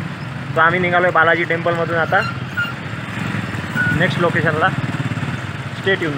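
A man talking in two short bursts over a steady low engine rumble.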